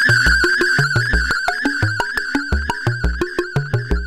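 Eurorack modular synthesizer playing a sequenced pattern of short pitched notes with a low bass pulse about twice a second. Over it rings a sustained high tone from an Echophon echo feedback loop run back through the FXDf six-band fixed filter. The tone fades after about a second, leaving the plucky notes more exposed.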